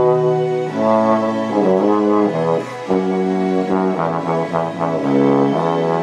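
Cimbasso, a low valved brass instrument, playing a melody in held notes that change pitch about every half second.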